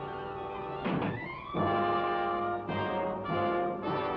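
Dramatic orchestral underscore with brass: a held chord, a heavy hit about a second in, then loud sustained brass chords that restart three or four times.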